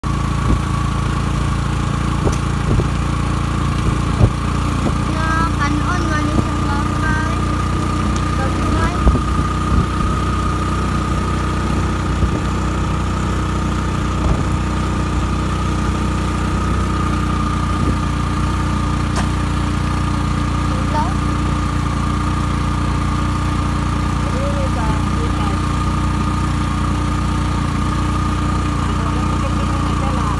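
Vehicle engine and road noise heard from a moving vehicle: a steady low rumble with a constant whine, and a few knocks from bumps in the first ten seconds.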